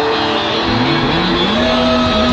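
Instrumental rock backing track with electric guitar. About a third of the way in, a low note slides steadily up in pitch and is then held.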